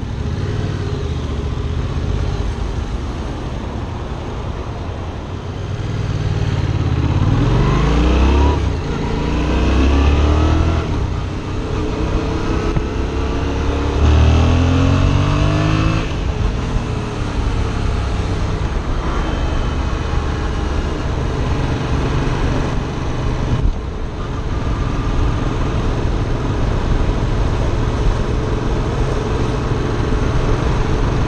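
Yamaha FZ-07's parallel-twin engine on its stock exhaust, heard from the rider's seat over wind noise. It runs low at first, then accelerates hard through three rising sweeps with a drop at each gear change, and settles to a steady cruise.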